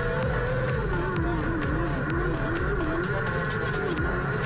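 Background electronic music with a steady beat, mixed over a micro sprint car's engine whose pitch rises and falls as it works around the dirt track, dipping lowest mid-way through.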